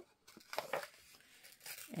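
Faint rustling of paper ephemera being handled, in a few short scuffs.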